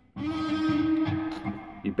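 Electric guitar playing one held note, bent up on the G string from the seventh fret to the ninth, ringing steadily for about a second and a half and then dying away.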